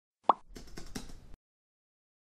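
Animated intro sound effect: a short rising pop as an address bar appears, then a quick run of soft keyboard-like clicks as a web address is typed into it, stopping a little past a second in.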